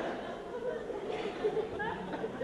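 Theatre audience laughter trailing off into murmuring chatter and a few scattered chuckles.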